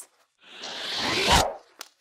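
A swishing sound effect, about a second long, that swells and ends abruptly with a soft low thud: a picture card flying into a bag. A faint click follows.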